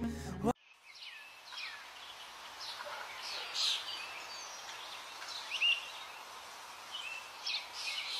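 Music cuts off abruptly about half a second in. Then small birds chirp, with short scattered calls over a steady background hiss.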